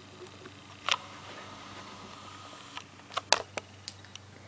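Handling noise from a handheld video camera as it is moved down to table level: a knock about a second in, a faint steady whir, then a few sharp clicks and taps near the end.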